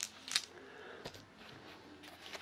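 Small six-sided dice clicking against each other as a hand picks them up off a book page: two sharp clicks about a third of a second apart, then a couple of fainter ticks about a second in.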